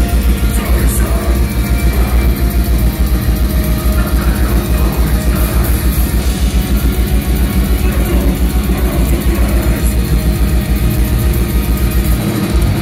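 Black metal band playing live and loud: fast, even kick-drum pulses under a dense wall of distorted guitars, heard from the crowd.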